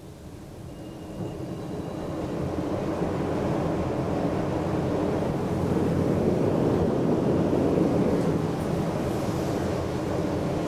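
ThyssenKrupp high-speed traction elevator car setting off and travelling: a rushing ride noise with a low hum, heard inside the car, that swells over the first three seconds as the car picks up speed, then holds steady.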